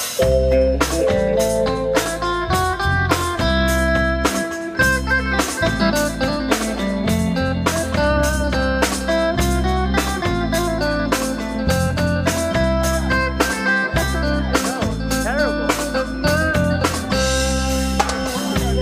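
Live reggae band playing an instrumental passage: an electric guitar melody over bass guitar and drum kit, with an even, steady beat.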